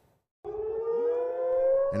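Air-raid (civil defense) siren wailing, warning of incoming missiles and drones; it starts about half a second in and its pitch rises slowly.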